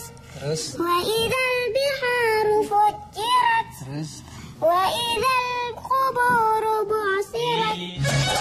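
A young child reciting Quranic verses from memory in a melodic chant: phrases of held and gliding notes with short breaks between them.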